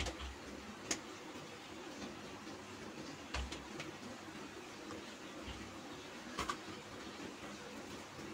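Soft room tone with four faint taps as dough balls are rolled between the palms and set down on a steel plate.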